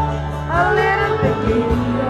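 A singer's voice through a microphone over amplified backing music with a steady bass line; the voice swoops up in pitch about half a second in.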